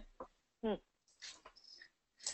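A brief, soft 'hmm' from a person over a quiet line, a single short murmur that bends in pitch, with a faint click just before it.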